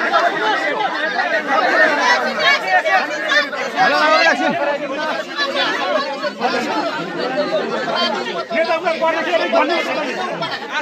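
Crowd chatter: many people talking loudly over one another.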